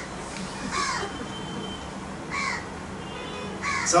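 A crow cawing three times, each call short and falling in pitch, spaced over a second apart.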